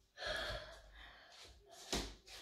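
A woman's audible breath, lasting about half a second, taken in a pause between sentences, then a short faint click near the end.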